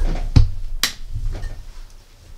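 Two sharp clicks about half a second apart over low knocking and rumbling, which fades out after about a second and a half.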